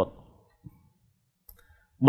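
The tail of a man's word, then near silence broken by two faint short clicks, one about two-thirds of a second in and one about one and a half seconds in.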